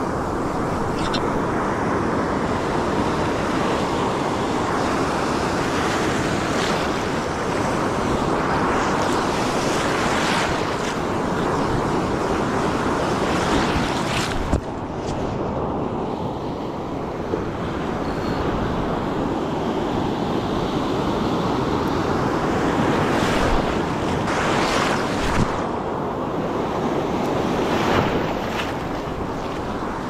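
Ocean surf breaking and washing up the beach in a steady, continuous rush, with wind buffeting the microphone.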